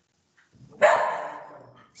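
A pet dog barking once, about a second in, sudden and loud and then fading away.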